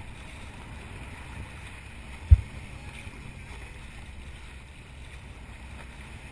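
Steady low rush of water and wind on a camera mounted at a moving boat's bow, with one sharp thump a little over two seconds in.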